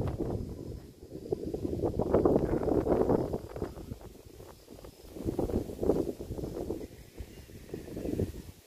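Wind buffeting the microphone in gusts: low noise that swells and fades about three times.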